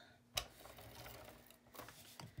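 ATG adhesive tape gun working over a kraft-board planner cover: one sharp click about a third of a second in, then a faint steady hiss as the tape runs, with a few small clicks near the end.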